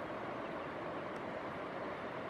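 Steady outdoor background noise, an even hiss with no distinct sound events.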